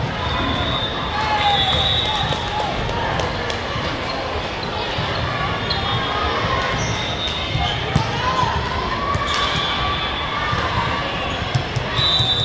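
Echoing sports-hall din of a volleyball tournament: many voices talking and calling, balls thudding on the hardwood floor and being struck, with several short shrill notes rising above the noise.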